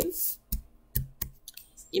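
Oracle cards handled and laid down on a table: a few sharp clicks, the first about half a second in and two more close together about a second in, with fainter ticks near the end.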